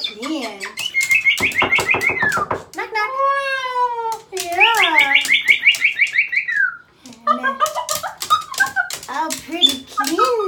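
Moluccan cockatoo chattering in a speech-like babble, with two drawn-out, pulsing high calls, one about a second in and one near the middle that falls away at its end. The sound rings a little in the small tiled bathroom.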